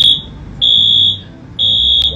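A high-pitched electronic alarm beeping: half-second beeps about once a second, with a low hum underneath.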